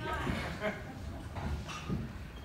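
Indistinct talking from people in a concert audience, with no music playing.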